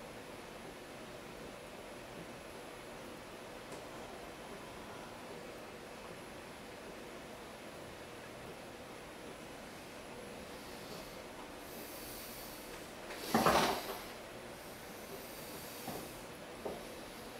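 Steady low hum of a spinning potter's wheel while wet clay is knuckle-lifted into a jar, with one short, loud breathy burst a little after halfway.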